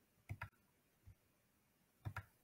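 Faint computer mouse clicks: a quick double click about a third of a second in, then one softer single click about a second in, as screen sharing is set up.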